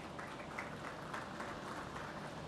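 Faint, light applause from a small audience, scattered hand claps over a background hum.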